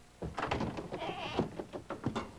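A person's voice without clear words, starting a moment in and going on to the end, pitched and unsteady, loudest just past the middle.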